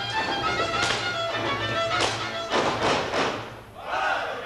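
Live Hungarian folk dance music led by fiddle, with several sharp stamps from the dancers' boots on the stage. The music drops away briefly near the end.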